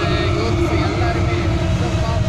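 Busy indoor mall atrium ambience: a steady, loud low rumble with scattered distant voices mixed into it.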